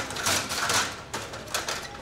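Irregular clattering and scraping noises in a few rough bursts.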